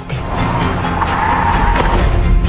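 A car's tyres squealing, a steady high screech over trailer music, with a deep rumble coming in near the end.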